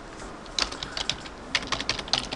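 Computer keyboard typing: a quick, uneven run of key clicks starting about half a second in, as Korean text is typed.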